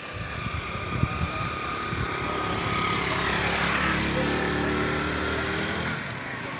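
Motorcycle engine passing, growing louder over the first three or four seconds and then holding steady. A few low thumps come in the first two seconds.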